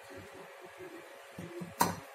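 An aluminium pressure cooker clanks once, sharply and loudly, near the end, after faint handling sounds.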